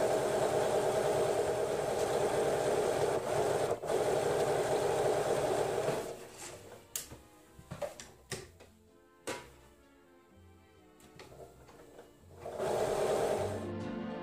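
Electric sewing machine running steadily at speed for about six seconds as it stitches fabric, then stopping; a few light clicks follow before it starts running again near the end.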